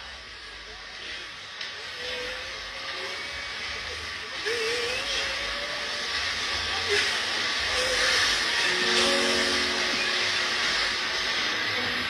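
Church service video playing through a phone's speaker: a steady hiss-like crowd noise that grows louder about four seconds in, with faint voices underneath.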